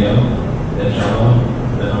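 Speech only: a man speaking Indonesian into a handheld microphone.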